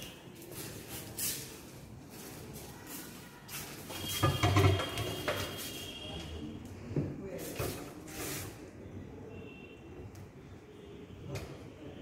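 Metal Kater's pendulum rod being handled and shifted on its balancing support on a bench: a series of irregular knocks and scrapes, the loudest about four seconds in with a brief metallic ring.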